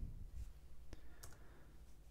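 Faint low room hum with a single sharp click about a second in.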